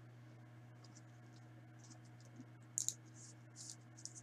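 Soft rustling and scraping of a trading card being handled against a plastic card sleeve, a few brief scratches with the loudest pair a little before three seconds in. A steady low electrical hum sits underneath.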